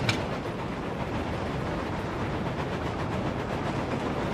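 Battery-powered toy train engine running along plastic track: a steady whirring rattle, with a short click right at the start.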